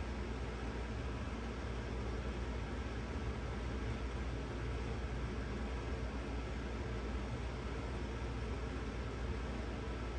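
Steady room noise: a low hum under an even hiss that does not change.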